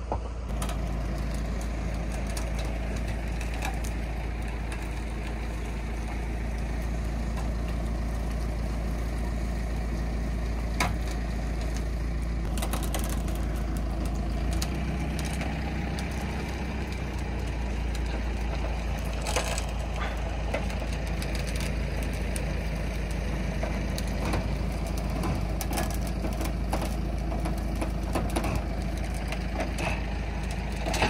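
A tractor engine idling steadily, with occasional sharp cracks of twigs and branches snapping underfoot.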